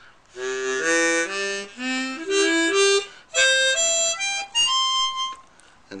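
Hohner Super 64X chromatic harmonica played through the notes of the C-major chord: first a few chords, then single notes stepping up in pitch, ending on a held higher note.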